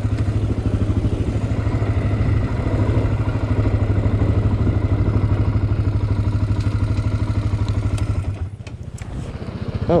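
Single-cylinder four-stroke engine of a Honda 400-class sport quad idling steadily with an even, rapid pulse. It drops briefly quieter for about a second near the end.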